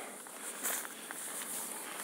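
Faint footsteps on grass as someone walks a few paces, over a light outdoor background hiss.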